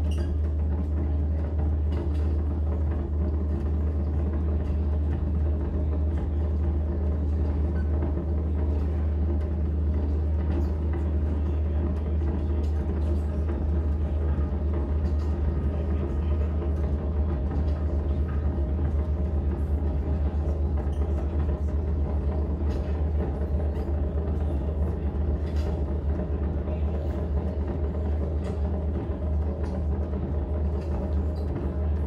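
Live electronic drone music: a loud, steady low rumble with several sustained tones layered above it, unchanging and without a beat.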